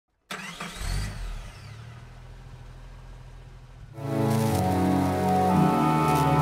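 Logo intro sound design: a sudden deep hit with sweeping tones that rise and fall and fade away, then intro music with sustained notes starts about four seconds in.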